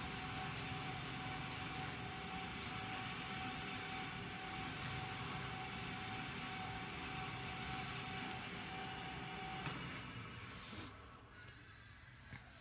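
Record Power wood lathe running steadily with a steady whine, while a cloth is held against the spinning stabilized-wood lid to buff in friction polish. The motor is switched off near the end and the sound dies away.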